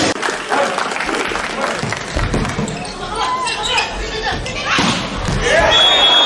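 Volleyball being played in an echoing sports hall: sharp thuds of the ball being served, hit and dug, with players' shouts and crowd voices rising near the end. A short high whistle tone sounds near the end as the rally ends.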